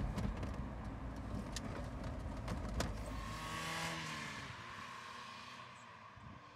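MGF roadster on the move: steady engine and road rumble, then about three seconds in an engine note that rises and falls in pitch before fading away toward the end.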